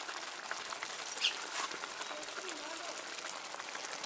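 Faint outdoor background: a steady hiss with distant voices, and one short high chirp about a second in.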